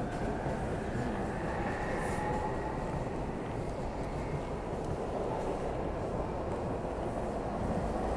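SEPTA Silverliner V electric regional rail train at a station platform: a steady mechanical hum and rumble with faint whining tones that drift slightly in pitch.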